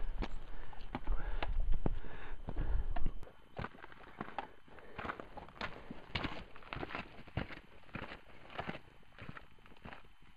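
Hiking boots crunching on a rocky, gravelly trail, about two steps a second, growing fainter as the walker moves away. For the first three seconds a low rumble of wind on the microphone sits under the steps, then cuts off.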